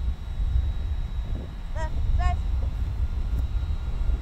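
Wind rumbling on an outdoor microphone. About two seconds in there are two short, high pitched calls in quick succession.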